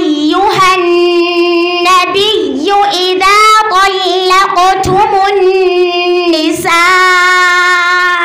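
A young girl's voice reciting the Qur'an in melodic, drawn-out tajwid chant through a microphone. Long sustained notes bend and turn in ornamented phrases, ending on a long held note.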